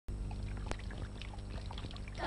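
Water pouring and trickling over a low steady hum, with scattered small drips and one sharp click under a second in.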